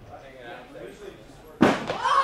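Low chatter, then a single loud slam about a second and a half in.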